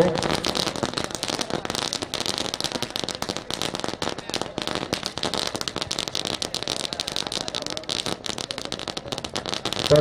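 A long string of firecrackers going off in a continuous, rapid, irregular crackle of small bangs.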